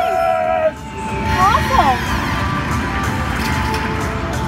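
Aristocrat Lightning Link slot machine sounding its electronic win tones as the win meter counts up during free games, over steady casino background noise and distant voices.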